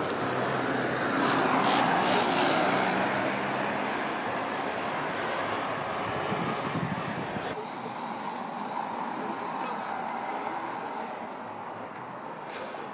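Road traffic and vehicle engine noise, loudest in the first few seconds and dropping off abruptly about halfway through, with faint voices in the background.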